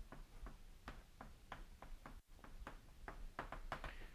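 Chalk writing on a blackboard: a quick, irregular run of faint taps and short scrapes as words are written out.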